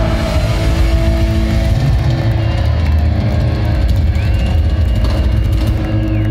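Heavy metal band playing live in a hall, with distorted bass and guitar sustaining low notes under the drums. A thin high held tone comes in about four seconds in and stops near the end.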